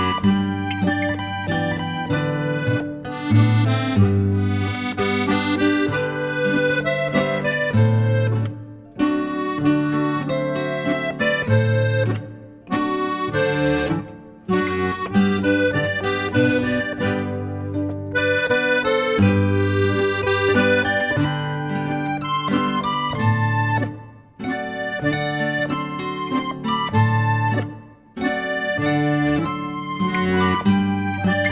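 Traditional Tyrolean Stubenmusik ensemble playing a Ländler, an instrumental folk dance tune in triple time, with held melody notes over a steady bass. The music breaks off briefly several times between phrases.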